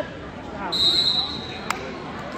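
A referee's whistle: one steady, high blast of about a second, starting just under a second in and ending with a sharp click. Crowd voices carry faintly underneath.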